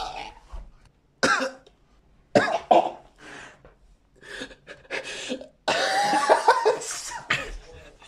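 A person coughing several times: a sharp cough about a second in, two more close together around two and a half seconds, and a longer, louder run of coughing from about six seconds.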